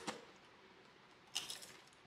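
A short crunch of a spicy tortilla chip being bitten, about one and a half seconds in, in otherwise near silence.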